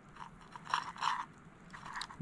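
Someone chewing a mouthful of roasted Sour Patch Kids and marshmallow: a few soft, wet, crunchy chews.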